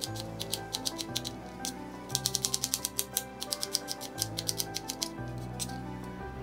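Kitchen knife dicing an onion on a plastic cutting board: quick runs of light taps, about ten a second at their fastest, with a short break about two seconds in. Soft background music runs underneath.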